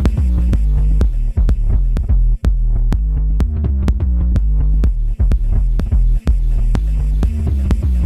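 Techno track playing in a DJ mix: a deep sustained bass with a fast, steady pattern of ticks over it. The bass drops out for an instant twice.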